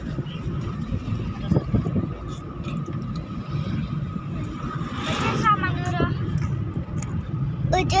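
Steady road and engine rumble of a moving car heard from inside the cabin, with a brief voice about five seconds in and talk starting again near the end.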